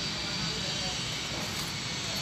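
Steady background drone with no distinct events, of the kind a running vehicle engine or nearby traffic makes.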